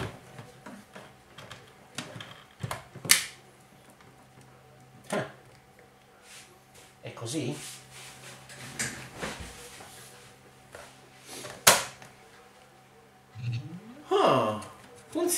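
A Lenovo ThinkPad L480 laptop being seated in its docking station and handled on a desk: a few sharp plastic clicks and knocks, the loudest about three seconds in and another near the end, over a faint steady hum.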